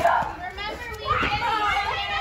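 A group of children shouting and calling out excitedly as they play a running game, loudest at the very start and again after about a second.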